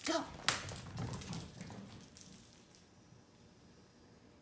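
A single sharp tap about half a second in, then faint scuffling that fades over the next couple of seconds: a thrown cat toy landing on the hardwood floor and a kitten scampering after it.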